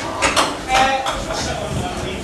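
Voices talking in an echoing hall, with two sharp clacks shortly after the start.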